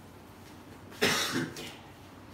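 A man coughing once, a sudden harsh burst about a second in that dies away within half a second.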